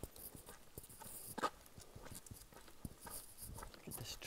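Faint footsteps on a dirt trail strewn with dry leaves, irregular scuffing steps with one sharper click about a second and a half in.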